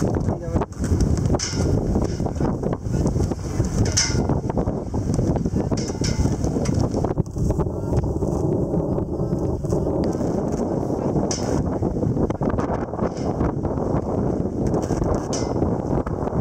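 Wind buffeting the microphone on the open deck of a sailing ship under way, a dense steady rush, with a few brief sharp clicks scattered through it. About halfway through, a faint steady tone sounds for two or three seconds.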